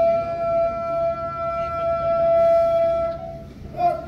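A bugle holding one long, steady note for about three and a half seconds, then sounding again near the end.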